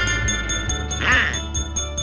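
Cartoon orchestral music with a light ticking beat about four times a second, and about a second in a short raspy squawk in Donald Duck's quacking voice.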